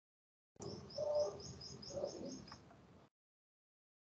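A bird chirping in a quick run of about eight short high notes, roughly five a second, with fainter lower sounds beneath. The sound cuts in suddenly under a second in and cuts off just after three seconds.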